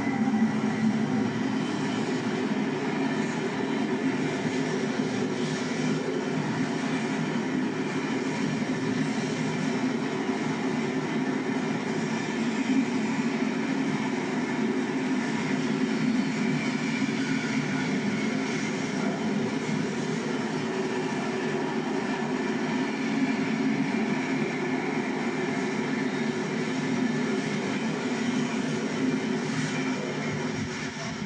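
Class 60 diesel freight locomotive passing close by with its engine running, followed by a long train of tank wagons rolling past with a steady noise of wheels on rail.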